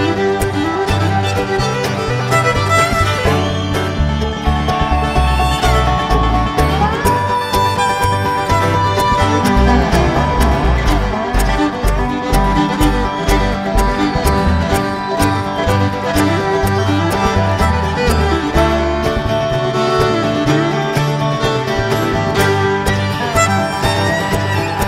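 Live bluegrass band playing an instrumental break, a bowed fiddle out front with a dobro and a steady bass line underneath.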